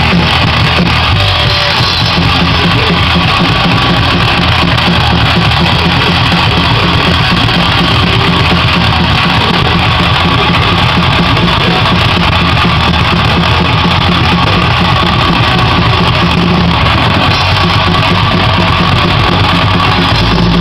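A metal-punk band playing live: distorted electric guitar over a drum kit with crashing cymbals, loud and unbroken.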